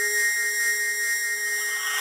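Electronic music intro: held, thin synth tones high in pitch with no drums or bass, the build-up of a drum and bass track.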